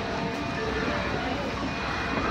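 Osaka Metro Midōsuji Line subway train slowing as it runs in alongside a tiled station wall: a steady rumble of wheels and running gear, heard from inside the car, with faint electric motor tones.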